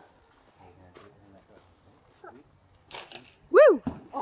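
A loud, short exclamation from a person, its pitch rising then falling like an 'ooh!' or 'whoo!', about three and a half seconds in. It follows a few quiet seconds with a faint click about a second in.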